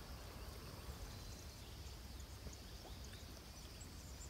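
Faint outdoor background noise by open water: a low steady rumble and hiss with a few soft, faint ticks.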